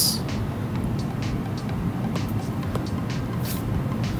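Steady low background hum with a few faint, light taps, likely a stylus tapping the tablet's glass screen while picking a colour.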